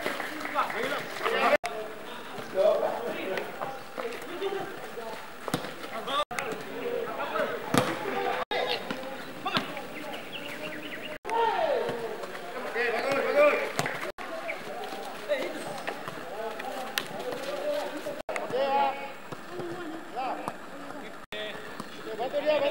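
Footballers calling and shouting to each other during a small-sided passing drill, with the thuds of the ball being kicked. The sound drops out for an instant several times where the footage is cut.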